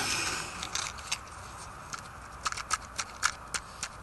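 Handling noise: a series of light, sharp clicks and taps as a wax-dipped tampon fire starter is picked up and handled, coming closer together in the last couple of seconds, after a hiss that fades in the first second.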